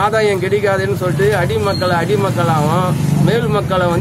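A man speaking continuously in Tamil, over a steady low background hum.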